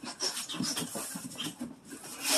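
A cardboard box being handled and tilted, its cardboard rubbing and scuffing in an irregular run of soft scrapes.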